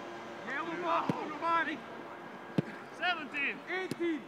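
Football being kicked on a grass training pitch: three sharp thuds, about a second in, midway and near the end, among short calls and shouts.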